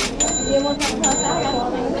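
A high, steady bell-like ringing tone that lasts over a second, with two sharp clicks a little under a second apart, over background voices.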